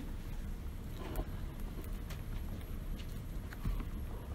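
Room noise with a few light, scattered taps or knocks.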